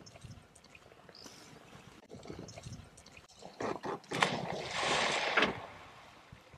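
A waterbuck splashing through a river: a loud rush of splashing water starts about four seconds in, lasts about a second and a half, then fades. Before it there is only faint outdoor background.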